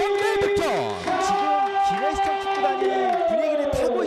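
Football-ground sound just after a goal: two long held notes with shouting voices over them, the higher note sliding down near the end.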